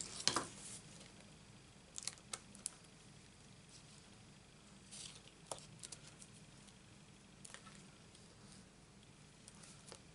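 Faint handling sounds of hands and a thin pick tool working on a paper card and craft mat: a few scattered light taps, ticks and rustles, some in quick clusters.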